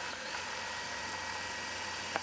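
Gammill Statler Stitcher computer-guided longarm quilting machine stitching out a pattern, a steady mechanical hum.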